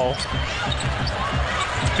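Basketball being dribbled on a hardwood court, a quick run of low bounces over steady arena crowd noise.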